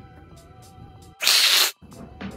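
A sharp hiss lasting about half a second, a little over a second in, over faint background music.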